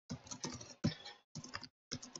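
Computer keyboard typing in quick runs of keystrokes, with short pauses between the runs.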